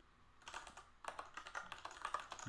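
Typing on a computer keyboard: a run of quick, irregular key clicks starting about half a second in.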